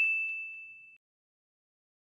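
A bright, bell-like ding sound effect with a single clear ringing tone, fading away over about a second, with a couple of faint ticks in its tail.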